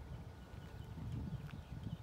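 Footsteps on pavement: irregular soft, low thuds as someone walks.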